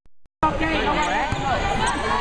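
A brief dropout at the start, then indoor volleyball court sounds: players' and spectators' voices, with squeaks and thumps of shoes and a ball on the hardwood floor between rallies.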